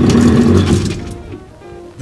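An antique Otis elevator's folding lattice gate being slid open, a rattling rush that fades out after about a second.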